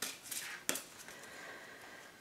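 Faint handling of a tarot card deck: a soft rustle and a few light ticks in the first second, the sharpest about two-thirds of a second in, then quiet room tone.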